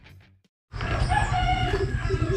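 A rooster crowing once, a call of about a second, over outdoor ambience that starts right after the tail of intro music cuts off.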